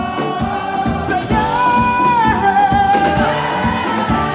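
Live band music: a voice singing long held notes that slide at their ends, over a steady drum-kit beat with keyboard and saxophone.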